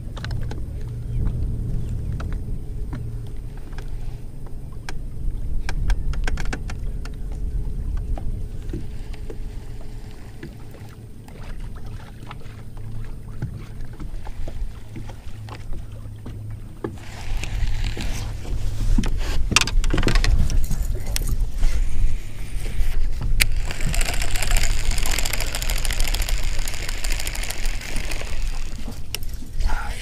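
Wind rumbling on the microphone and choppy water around a bass boat, with scattered clicks of rod and reel handling. A louder hiss comes in about halfway through and is strongest near the end.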